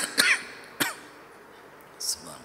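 A man clearing his throat at a microphone: short, harsh coughs in the first second, the last of them about a second in.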